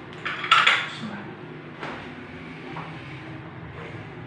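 A brief clatter of small hard objects knocking and clinking together about half a second in, followed by two faint single clicks.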